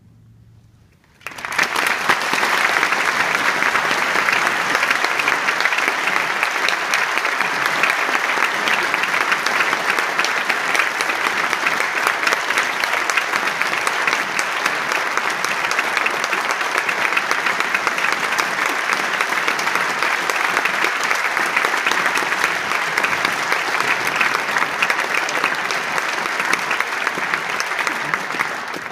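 The last of the wind ensemble's final chord fades out, and about a second in an audience breaks into applause that carries on steadily.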